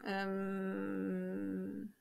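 A woman's drawn-out hesitation filler, a single vowel-like 'yyy' held at one steady pitch for nearly two seconds while she searches for her next words, cutting off just before she speaks again.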